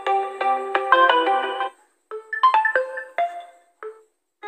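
Built-in ringtones previewing through a Realme Narzo 30A phone's loudspeaker as each one is selected: one melodic tune plays and cuts off a little under two seconds in, then a different tune starts and stops after just over a second, with a brief note near the end.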